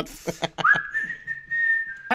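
A person whistling one note, sliding quickly up at the start and then held steady, from about half a second in.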